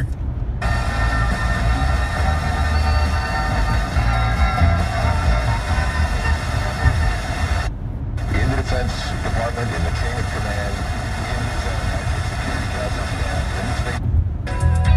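Car FM radio stepping up the dial through weak, distant stations: faint speech and music buried in static. The audio mutes for about half a second at the start and again about eight seconds in, each time the tuner moves up a channel. Low car-cabin rumble runs underneath.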